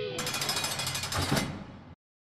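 A song's last held guitar note gives way to a harsh, rapid rattling noise that fades out to silence near the end.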